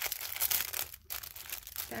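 Wrapping crinkling and rustling as hands handle and open a small wrapped package, in uneven crackles.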